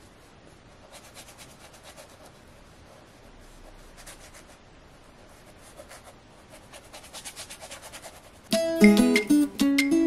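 A paintbrush scrubbing paint onto textured canvas in faint short strokes, which come faster near the end. About eight and a half seconds in, acoustic guitar music starts abruptly and much louder.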